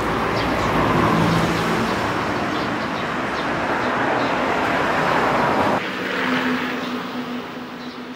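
A motor vehicle passing close by: a loud rushing engine noise with a low hum that peaks about a second in, stays loud, then drops off suddenly around six seconds in, leaving a fainter hum. Small birds chirp faintly in the background.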